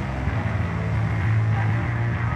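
Steady low electric hum from the band's guitar and bass amplifiers, with the instruments plugged in but not being played.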